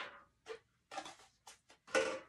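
Felt-tip marker writing on chart paper: about six short scratching strokes, the loudest near the end.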